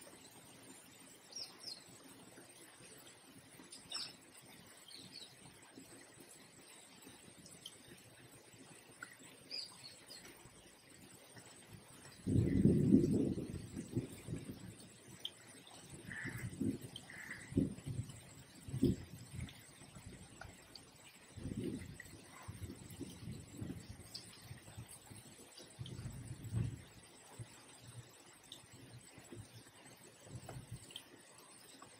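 Faint bird chirps, short and high, scattered through the background. Low thuds and rumbles come in from about the middle; the loudest is a rumble of about two seconds, followed by shorter low knocks.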